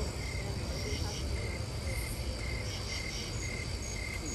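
Crickets chirping in an even rhythm, about two chirps a second, with fainter higher chirps above them and a low rumble underneath.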